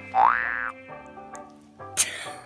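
Background music with plucked strings, interrupted about a quarter second in by a loud, short, rising boing-like tone lasting about half a second. A sharp click comes at the very end.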